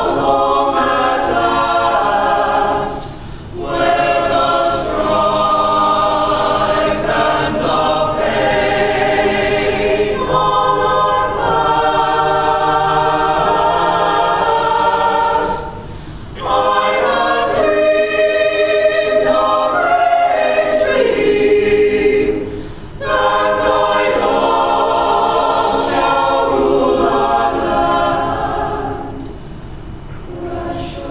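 Mixed-voice school choir singing in parts, with short breaks between phrases about 3, 16 and 23 seconds in, and the singing tailing off near the end.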